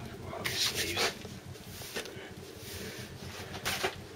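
Hands scraping and rustling loose compost in a plastic tub, in a few short bursts.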